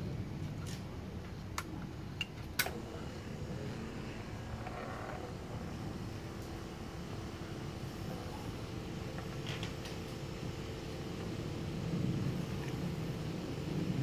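Foam generator running steadily while fresh water is flushed through its wand to rinse out the foaming solution, a low even hum. A few sharp clicks in the first three seconds.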